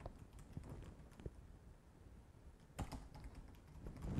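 Computer keyboard keys being typed quietly as a password is entered: a run of faint keystroke ticks, with one sharper, louder click a little under three seconds in.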